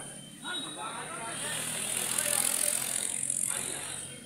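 Indistinct voices of people in the background, with a rushing street noise that swells through the middle and eases toward the end.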